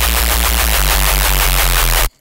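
Heavily distorted neuro reese bass synth playing back, dense and really crunchy, with a low end that pulses about six times a second.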